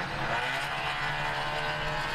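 Semi-truck's diesel engine running under load, heard from inside the cab through the dashcam, its pitch rising slightly about half a second in and then holding steady.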